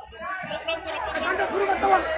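Indistinct chatter of several voices, with a brief lull at the start.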